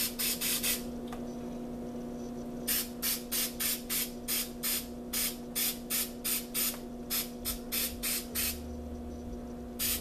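Aerosol spray-paint can sprayed in quick short bursts, about three a second, in runs of several with pauses of a second or two between, over a steady background hum.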